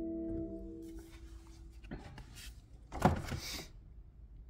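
An organ chord held and then released, followed by a few rustling, knocking noises, the loudest a sharp knock about three seconds in.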